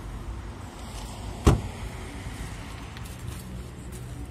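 A car door slammed shut once, a sharp thud about a second and a half in, over a steady low rumble of road traffic.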